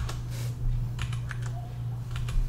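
Computer keyboard keys clicking: a few scattered, irregular keystrokes over a steady low hum.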